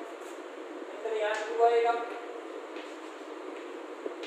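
Chalk writing on a chalkboard: short squeaky, pitched strokes and small taps as the chalk moves across the board. The loudest squeaks come between about one and two seconds in.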